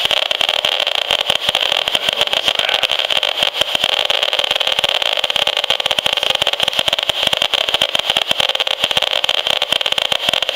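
HF35C radio-frequency analyzer's audio output crackling with a dense, nearly continuous stream of rapid clicks over a steady hiss. Each click is a pulse picked up from the wireless transmissions of a bank of smart meters.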